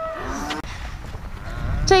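A young cow mooing briefly near the start, over a low rumble.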